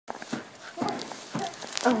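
A toddler's feet thumping on a carpeted floor as she dances about: a few irregular thuds, about five in two seconds.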